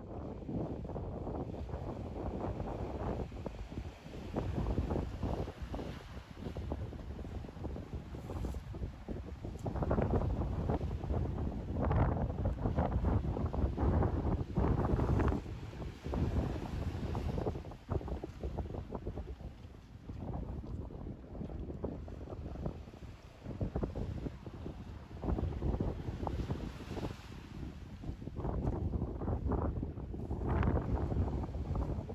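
Gusty wind buffeting the microphone, strongest in the middle, over waves washing onto the shore below.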